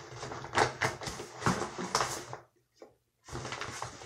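Clear plastic hair packaging crinkling and rustling in irregular bursts as the bag and hair are handled, cutting out to silence for about half a second just past halfway.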